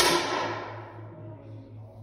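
A single air rifle shot: one sharp crack right at the start, followed by a short ringing tail that dies away within about a second.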